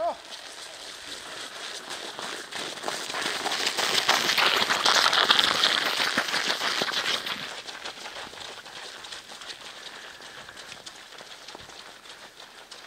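Many footsteps of runners crunching on packed snow, growing louder over the first few seconds, loudest around the middle, then fading away.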